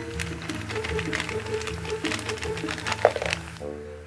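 Background music with a steady tune, over which a plastic blind bag crinkles and tears open and small plastic building pieces click and rattle out into a hand, with a sharper click about three seconds in.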